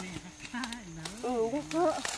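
A person humming a slow tune in held, stepping notes, with a few short sharp snaps and rustles from corn ears being broken off the stalks.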